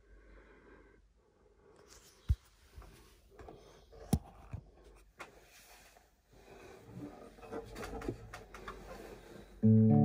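Handling noise, rustling with a few sharp knocks, as a classical guitar is picked up and settled on the lap; just before the end a chord is strummed on its nylon strings and rings out.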